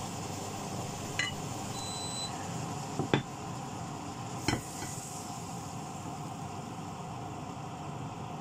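A pan of food cooking on the stove with a steady sizzle, and three sharp clinks of a utensil against the pan about one, three and four and a half seconds in, the middle one loudest.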